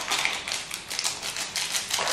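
A seasoning sachet being shaken over a pan of instant noodles: a quick run of crinkly clicks and powder pattering into the pan.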